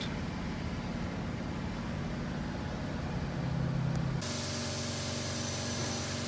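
Cab interior of a Ford pickup with a tuned 6.4-litre turbo-diesel V8 under way: steady engine and road drone, swelling a little just before it cuts off. About four seconds in it changes abruptly to a steady outdoor hiss with a low, even hum under it.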